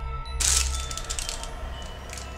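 Crinkling of a crumpled plastic candy wrapper being handled, a dense run of quick crackles that starts about half a second in and fades over the next two seconds, over soft background music with mallet-percussion tones.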